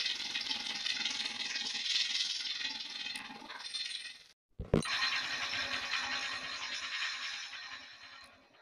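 Heavily effects-processed Nickelodeon station ident soundtrack: dense, rattly, distorted music. It drops out briefly about four and a half seconds in, then resumes and fades away near the end.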